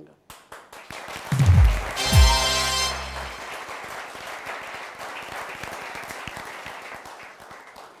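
Studio audience applauding, under a short music sting of two deep, falling booms about a second and a half in.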